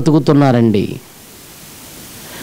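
A man preaching in Telugu into a microphone, breaking off about a second in; the rest is a pause filled only by a steady faint hiss.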